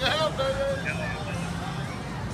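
A shouted whoop trails off with falling pitch at the start, followed by short faint calls over a steady low hum of outdoor noise.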